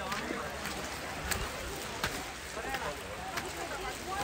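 Faint voices of people talking in the background over a steady outdoor rush, with three sharp taps spread through the moment.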